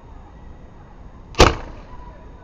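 Homemade PVC potato cannon firing: hairspray fuel in the combustion chamber set off by a barbecue-igniter spark gives one loud bang about one and a half seconds in, dying away quickly.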